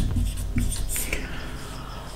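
Marker pen writing on a whiteboard: a few short scratchy strokes in the first second, then dying away.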